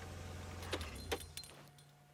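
Open safari vehicle's engine idling, then switched off about one and a half seconds in, with two short sharp clicks shortly before it stops.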